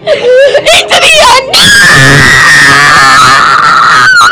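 A boy's voice wavering through a wordless line, then breaking into a loud, held scream from about a second and a half in: deliberately bad singing.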